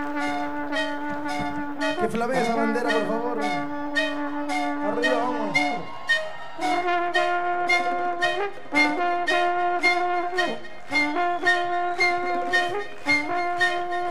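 Live brass band music: long held brass chords that shift pitch every couple of seconds over a steady percussion beat of about two hits a second.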